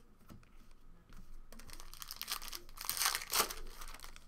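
Wrapper of a Panini Contenders Football trading card pack crinkling and tearing as it is opened, building from about a second in and loudest about three seconds in.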